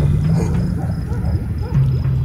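A loud, low, rumbling drone of background scoring, with a faint, even tick about three times a second above it.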